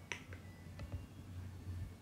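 A wall socket's rocker switch clicks once as it is pressed off, cutting power to the speaker's charger. A few fainter ticks follow.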